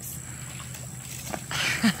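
Water splashing in an inflatable paddling pool, quiet at first and then a short splash near the end, with a brief laugh at the very end.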